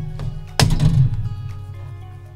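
A single thunk about half a second in, the removed MacBook Pro display assembly being set down, over background music with sustained notes.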